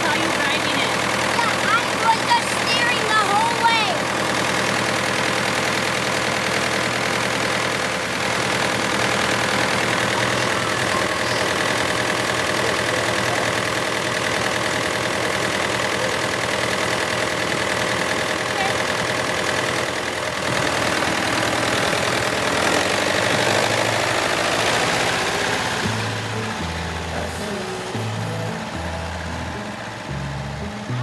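Farmall 504 diesel tractor engine running steadily at idle, with a child's voice in the first few seconds. Background music comes in near the end.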